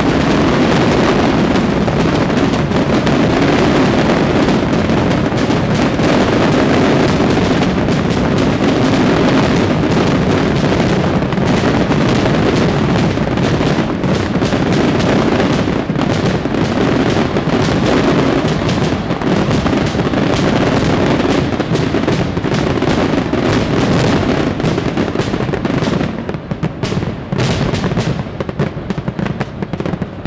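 Fireworks display going off in a dense, continuous barrage of bangs and crackles. About four seconds from the end it thins to scattered separate bangs as the display winds down.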